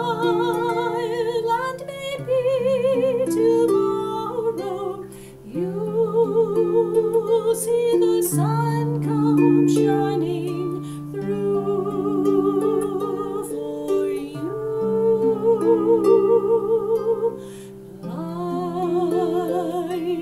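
A woman sings a slow song with vibrato to her own lever harp accompaniment, plucked strings ringing over low bass notes, with brief pauses between phrases.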